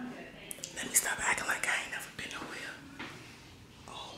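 A woman's voice whispering quietly, with a few sharp clicks about half a second to a second in.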